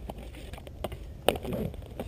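A few sharp clicks over a steady low rumble, one click much louder than the rest about a second and a quarter in.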